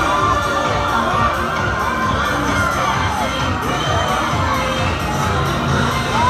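Crowd of parade spectators, children's voices among them, shouting and cheering over parade music, with many voices calling out at once.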